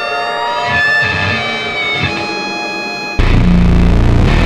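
Instrumental experimental music: sustained, slowly gliding synthesizer and guitar tones, then a little over three seconds in an abrupt cut to a much louder, denser section heavy in bass.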